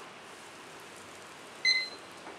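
A single short, high-pitched electronic beep about one and a half seconds in, over a steady low hiss.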